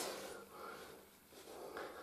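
Quiet room tone with a faint, low steady hum and a little soft, faint rustling.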